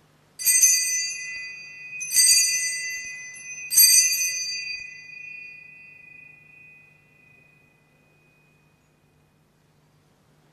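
Altar bell rung three times, about a second and a half apart, each ring dying away slowly. It marks the elevation of the consecrated host at Mass.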